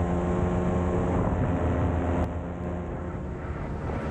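Paramotor's Moster two-stroke engine running steadily in flight, a constant droning pitch that eases off slightly about halfway through.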